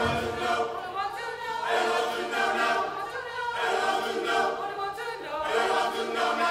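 A choir singing sustained chords in phrases a couple of seconds long, with short breaks between them.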